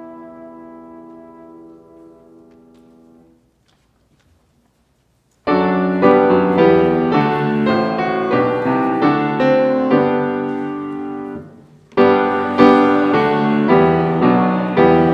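A held final chord of trumpet and grand piano fades away, followed by about two seconds of near silence. Then a grand piano starts playing loud chords, breaks off briefly near the end, and starts again.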